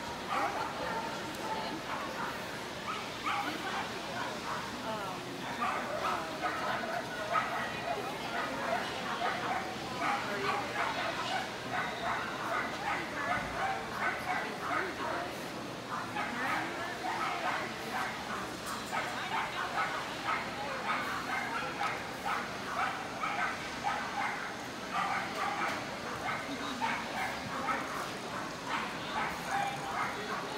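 Dogs barking, short barks repeated many times over a background of crowd chatter.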